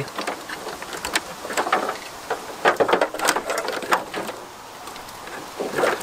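Car wiring harness being pulled out of the engine bay by hand: wires, plastic connectors and conduit rustling, scraping and clicking against the bodywork in an irregular clatter.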